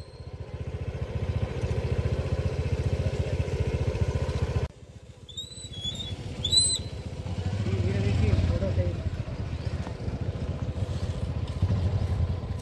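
A small engine running steadily nearby, with a short break about five seconds in. A few high chirps come around six seconds in.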